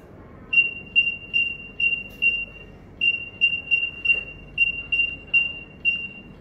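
Zebra DS9908R barcode scanner sounding its short, high decode beep again and again, about two or three times a second with one brief pause. Each beep marks a barcode read successfully as the labels are scanned in quick succession.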